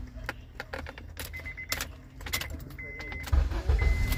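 Key clicking and keys jangling at a 2005 Honda Accord's ignition switch while a dashboard chime beeps, then about three seconds in the engine starts with a loud low rumble. It starts without trouble on the newly replaced ignition switch contact unit.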